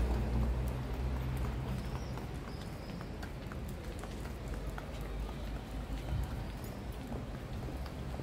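Footsteps on stone paving, a run of light clicks, over street ambience. A low engine hum from street traffic fades away in the first two or three seconds.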